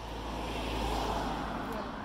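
A car passing by on the road, its tyre and engine noise swelling to a peak about a second in and then fading.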